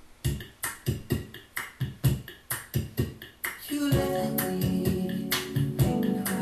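A recorded saxophone backing track starting up: an intro of sharp percussive hits, about two to three a second, with sustained chords and bass joining about four seconds in.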